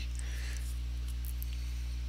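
Steady low electrical mains hum with a stack of overtones, over a faint hiss.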